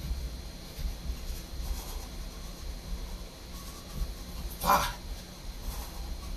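A dog gives a single short bark about three-quarters of the way through, over low dull thuds of footfalls on a carpeted floor.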